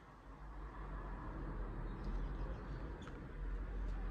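Faint background noise with a low rumble, growing a little louder about half a second in, and a couple of soft clicks.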